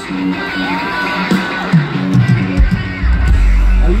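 Live electric guitar playing a riff through a concert PA, with a bent note about a second in; heavy bass comes in a little after three seconds.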